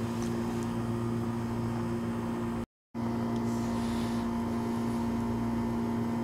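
Steady background hum of the voice recording, holding a few steady low tones, with no speech over it. It drops out to complete silence for a split second about halfway through.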